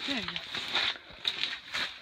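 A few short, noisy scuffs and splashes as a lake trout is hauled up out of a hole in the ice.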